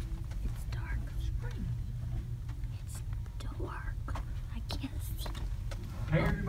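Hushed whispering in short snatches, with a few soft clicks, over a steady low rumble of room noise.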